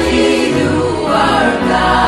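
Gospel song: a choir singing together over a steady bass backing.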